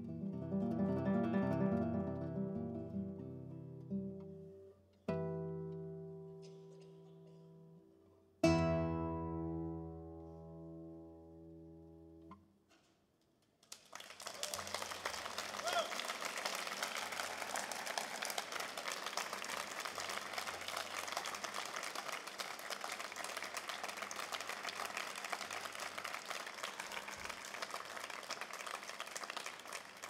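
Classical guitar ends a piece: a quick run of notes, then a chord and a final loud chord about three and a half seconds apart, the last one ringing until it dies away. After a moment's silence the audience applauds steadily.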